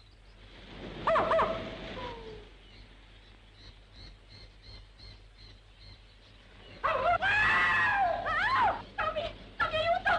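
Wild animal calls from the jungle: a short falling cry about a second in, then louder wavering calls that bend up and down in pitch from about seven seconds in.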